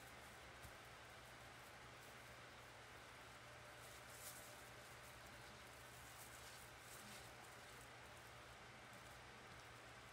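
Near silence: room tone with a faint steady hiss and low hum, broken only by a couple of very faint soft ticks.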